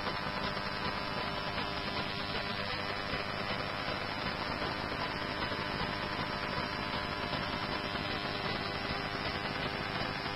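Steady hiss and hum from a fire-dispatch radio feed between transmissions, with no voice on the channel.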